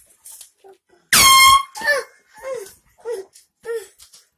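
One short, very loud air horn blast lasting about half a second, about a second in. A few short vocal sounds follow.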